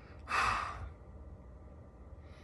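A man's single breathy sigh, one exhale of about half a second, shortly after the start.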